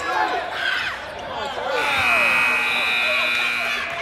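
Gym scoreboard buzzer sounding one steady, high tone for about two seconds, starting about two seconds in, as the game clock runs out to mark the end of a period. Crowd voices are heard before it.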